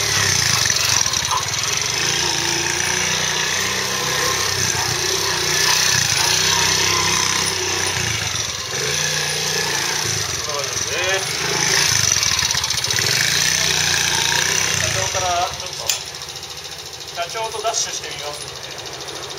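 Honda Magna 50 with a Daytona bore-up cylinder, its small single-cylinder four-stroke engine rising and falling in revs as it is ridden slowly in tight circles, then dropping to a quieter idle as it stops near the end.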